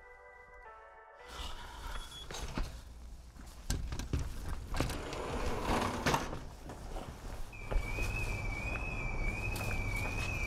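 A few chime-like music notes that cut off about a second in. Footsteps and knocks follow, then a high, wavering electronic beep from a store's anti-theft exit alarm that sets in about two thirds of the way through and holds: it is set off by shoes leaving unpaid for.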